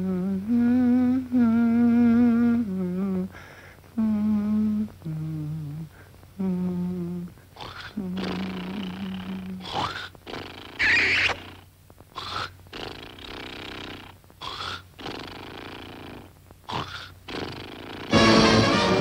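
A cartoon character's voice humming a slow lullaby tune without words, in long, wavering held notes. After about eight seconds it gives way to rough, breathy vocal noises in uneven stretches, with a sharp high cry about eleven seconds in.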